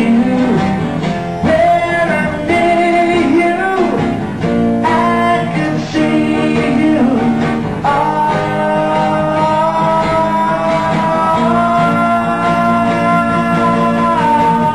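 Live duo of two acoustic guitars with a man singing over them, with long held vocal notes in the second half.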